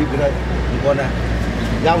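Brief bits of talking over a steady low rumble of street traffic.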